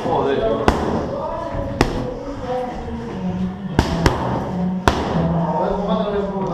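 Boxing gloves striking focus mitts: five sharp smacks, single punches about a second apart, then a quick one-two and one more, over the background noise of the gym.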